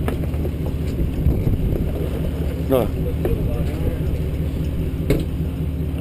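A sport-fishing boat's engine running with a steady low hum. There are a couple of light knocks, one at the start and one about five seconds in.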